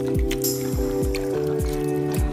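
Background electronic music with a steady beat: deep bass kicks that drop in pitch, under held chords and a high shimmering layer.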